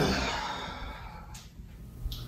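A person sighing: a breathy exhale that starts fairly loud and fades away over about a second.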